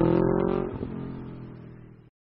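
Motorcycle engine sound effect: a revving note that rises slightly in pitch, then holds and fades away, dying out about two seconds in.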